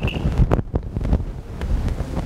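Low, uneven wind-like rumble on the microphone, with a few soft knocks about half a second in.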